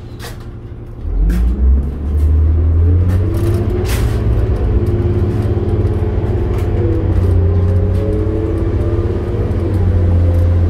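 Diesel engine of a 2006 New Flyer D40LF transit bus, heard from inside the cabin, revving up as the bus pulls away about a second in. Its pitch climbs and falls back several times as the automatic transmission shifts up, over a steady low rumble.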